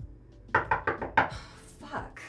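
A quick run of about five knocks on a door, then a short rattle.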